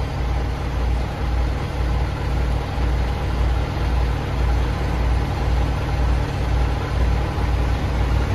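Semi-truck's diesel engine idling, heard from inside the cab: a steady low hum with an even, rhythmic throb.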